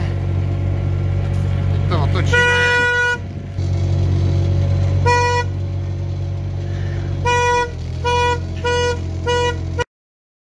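Site dumper's diesel engine running steadily while a horn is sounded: one long toot about two and a half seconds in, a short one about five seconds in, then four short toots in quick succession near the end, after which the sound cuts off.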